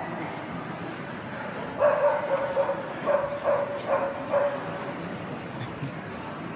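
A dog barking, a quick run of about five high barks over two to three seconds, over the steady murmur of a crowd.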